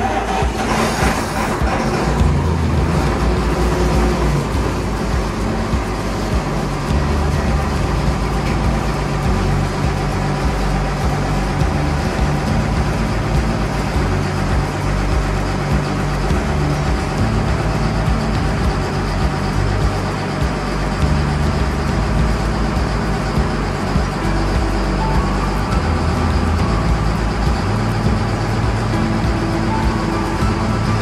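Cat Challenger 55 tracked tractor's diesel engine coming in suddenly at the start, then running steadily, with music playing underneath.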